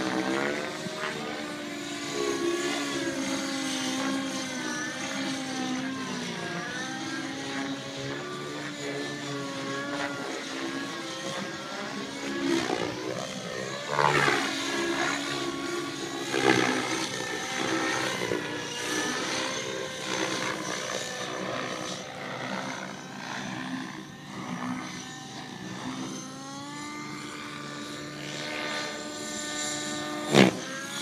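Radio-controlled model airplane flying, its motor's steady pitched drone rising and falling as it manoeuvres. It swells sharply in a few quick swoops about halfway through.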